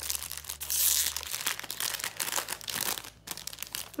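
Foil wrapper of a Panini Adrenalyn XL trading-card booster pack crinkling and tearing as it is opened by hand, a dense crackle of many small clicks.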